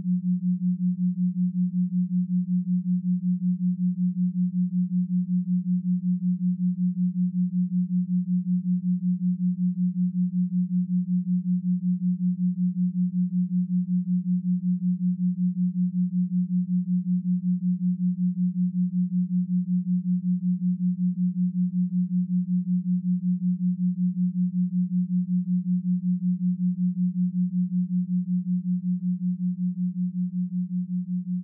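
Binaural-beat tone: a steady, low, pure tone that wavers rapidly and evenly in loudness. The wavering is the beat between two slightly detuned tones.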